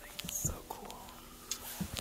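Faint background voices, indistinct, with a few light clicks and knocks.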